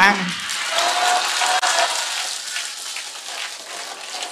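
Audience applause, fading away over a few seconds, with faint voices in the hall.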